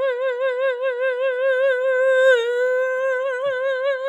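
A woman's voice holding one long, high note with a steady vibrato of about five wobbles a second, dipping slightly in pitch about two seconds in.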